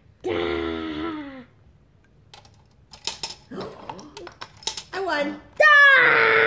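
A voice sounds briefly at the start. About three seconds in come sharp plastic clicks and clatter, a Connect 4 disc dropping down the grid, mixed with voices, and a voice rises to a squeal near the end.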